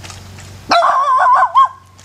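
A loud animal call about two-thirds of a second in, warbling quickly up and down in pitch for nearly a second and ending with a short extra note.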